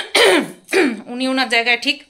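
A woman clearing her throat with a couple of rough, hacking bursts in the first second, then talking again.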